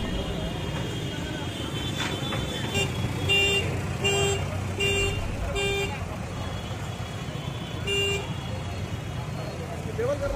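A vehicle horn sounding four short toots, evenly spaced under a second apart, and then one more a couple of seconds later, over the steady chatter of a street crowd and traffic rumble.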